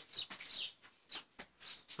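A bird chirping faintly in short, high, falling calls, several times, with a few light clicks in between.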